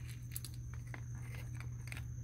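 Faint crunching and scattered clicks from raccoons eating and foraging, over a steady low hum.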